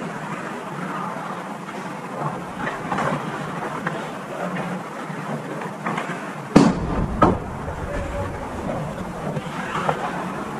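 Ice hockey play in an indoor rink: skates scraping and sticks clicking on the ice, with two sharp bangs about six and a half and seven seconds in, the first the loudest and followed by a low rumble.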